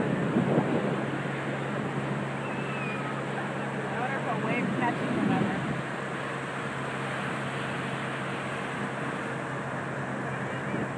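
Ocean surf breaking and washing up the beach: a steady rushing wash, with faint distant voices calling from the water a few seconds in and a steady low hum underneath.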